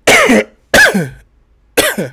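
A man coughing three times into his fist, the coughs loud and short, about half a second to a second apart.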